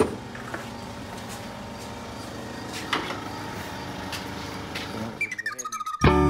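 Steady garage room tone with a couple of faint handling clicks. In the last second a rapid fluttering sweep leads into guitar music.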